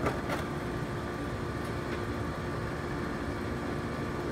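Steady low mechanical hum with a background hiss, and one or two faint knocks just after the start.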